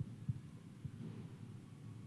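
Quiet room tone through the microphone: a low hum with a few faint, irregular low thuds.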